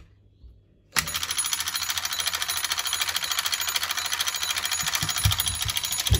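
Toy intruder alarm robot set off by the door opening: its electric alarm bell starts suddenly about a second in and rings loudly and continuously as a very fast, even metallic rattle. A click comes just before, as the door handle is pressed.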